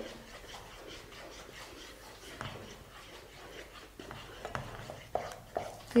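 Wooden spatula stirring a thin, runny rice-flour and curd batter in a pan: faint swishing, with a few light knocks against the pan in the second half.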